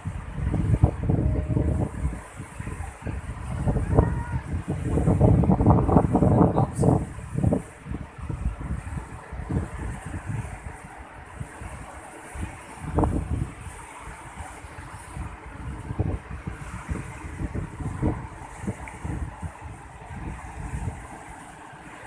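Wind buffeting the microphone in irregular gusts, strongest in the first several seconds, over the wash of surf breaking on a rocky shore.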